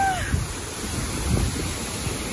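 Waterfall pouring onto rocks: a steady rush of falling water, with gusts of wind buffeting the microphone now and then.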